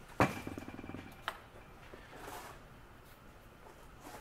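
A sharp metal clack followed by a quick rattling buzz lasting under a second, then a single click and a soft brief rubbing: a hose clamp and hand tool being handled as the pressure hose is worked off the pump.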